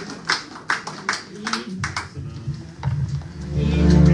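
Rhythmic hand clapping in time, about two and a half claps a second, fading out about two seconds in. About three and a half seconds in, electronic keyboard music starts loud with held low chords.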